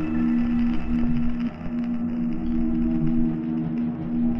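Electronic music track: a held low drone tone with overtones over a pulsing deep bass, briefly dipping about one and a half seconds in.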